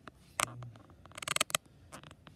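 Close handling noise: a short scratchy click about half a second in, then a quick cluster of rapid little clicks and scrapes a second in, as from fingers shifting on a handheld phone.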